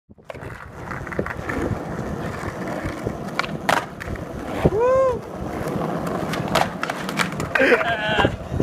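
Skateboard wheels rolling over rough asphalt, with a few sharp clacks of the board. About five seconds in a voice gives one loud call that rises and falls, and a short vocal 'uh' comes near the end as the rider goes down.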